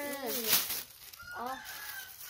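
A garment flapped sharply once as it is shaken out, about half a second in, then a chicken calls in the background for just under a second, a high drawn-out call.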